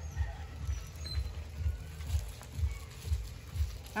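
Wind buffeting the microphone: an uneven low rumble that comes in gusts, with only faint handling sounds above it.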